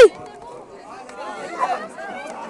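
Several people chattering at once, no clear words standing out. At the very start a loud held tone slides down in pitch and cuts off.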